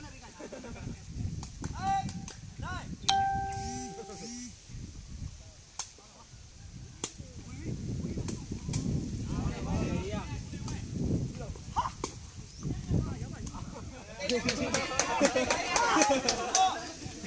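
Sepak takraw ball being kicked in play, a series of sharp cracks spread through the rally, over spectators' chatter. A brief steady tone sounds about three seconds in, and many voices rise together near the end.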